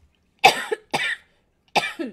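A person coughing: three short coughs, the first two close together and the third near the end.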